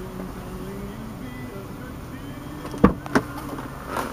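Two sharp clicks about a third of a second apart near the end, over a low steady background hum.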